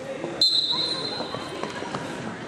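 A referee's whistle blows one long, steady, high blast about half a second in, stopping the wrestling action.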